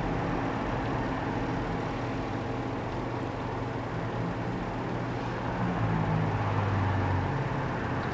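A steady low motor-like hum and rumble, swelling a little louder for a couple of seconds past the middle.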